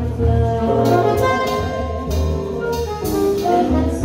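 Live jazz combo: a saxophone plays a melodic fill over walking upright bass, keyboard and drums, with cymbal strokes through it.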